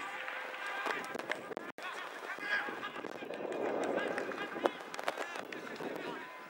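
Indistinct voices of cricketers calling out across the field between deliveries, with a swell of rushing noise around the middle and a few faint clicks.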